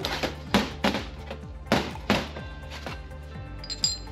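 About five sharp metal clunks and taps in the first half, then lighter ticks, as the steel blocks of a timing gear cover installer tool and a bolt are handled and set down on a steel workbench. Background music plays throughout.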